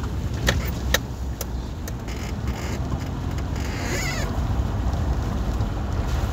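A vehicle driving over a rough gravel road: a steady low rumble of engine and tyres, with three sharp knocks from bumps or rattles in the first second and a half. There is a brief squeak about four seconds in.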